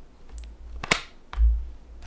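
Desk handling sounds: a sharp click about a second in, then a dull knock and rub as a Texas Instruments TI-36X Pro scientific calculator is pulled onto a clipboard.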